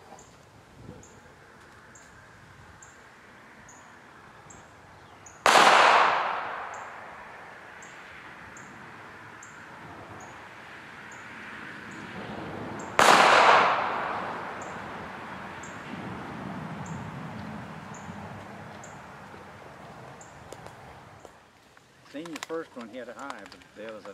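Two .380 pistol shots about seven and a half seconds apart, each a sharp report followed by an echo that fades over a second or two.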